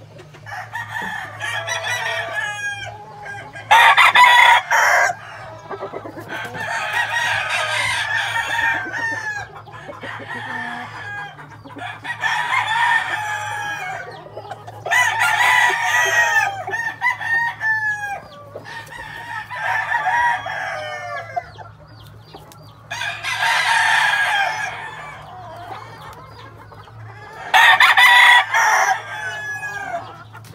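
Gamefowl roosters crowing one after another, about ten crows of a second or two each, the loudest about four seconds in and near the end. A steady low hum runs underneath.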